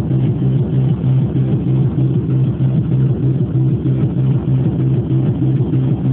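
Hardcore tekno pattern playing from a Yamaha RM1x sequencer/groovebox: a loud, steady, evenly pulsing bass beat with synth layers above it.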